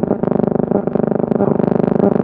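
A steady held chord of several sustained tones, like a soft keyboard or organ pad, with a slight rapid pulsing.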